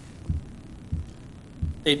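Three low, dull thumps about two-thirds of a second apart over a faint room hum, then a man starts speaking just before the end.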